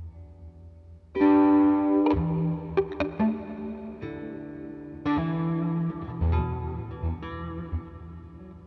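Les Paul electric guitar played through effects, with sustained distorted notes. A loud new phrase swells in about a second in and another about five seconds in, with a few short plucked notes between them, all over a steady low drone.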